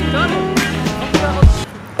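Background music with sustained notes over a low bass and a heavy beat, cutting off shortly before the end.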